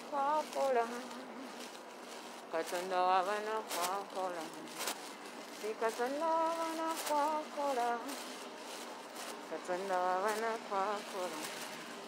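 A singing voice repeating a short melodic line of a gospel song chorus, each phrase held and wavering with vibrato and coming round about every four seconds. It sounds thin, with no bass.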